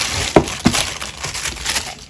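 Plastic mailer bag and the box's clear plastic wrap crinkling as the box is pulled out of the mailer, with two sharp crackles in the first second, the first the loudest.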